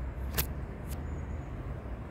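Steady low outdoor rumble, with a sharp click about half a second in and a fainter click just before a second in.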